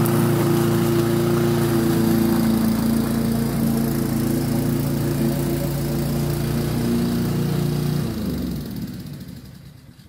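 Rover petrol rotary lawnmower engine running steadily while mowing, then shut off about eight seconds in, its note dropping as it winds down to a stop.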